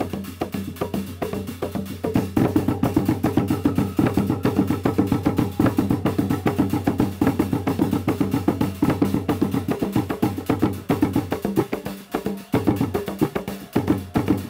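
Fast, dense traditional ngoma drumming for the Kiluwa dance, a quick run of drum and knocking strokes. It gets louder about two seconds in and thins out for a moment near the end.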